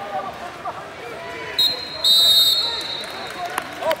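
A referee's whistle: a brief chirp about one and a half seconds in, then a louder, steady high-pitched blast about two seconds in, its tone lingering faintly afterwards. It stops the wrestling on the mat.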